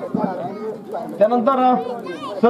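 Several men talking and chattering close to the microphone, overlapping voices with some high, sliding sounds among them.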